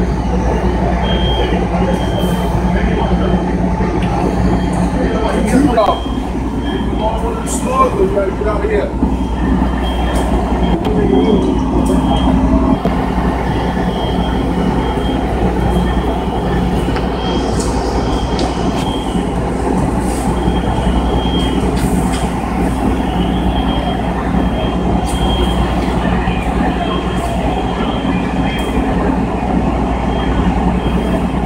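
Fire apparatus engines running steadily at a working structure fire, a continuous low rumble while their pumps supply water to the hose lines.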